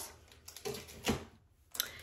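Plastic wax-melt snap-bar packaging being handled and set down: a few light rustles and clicks.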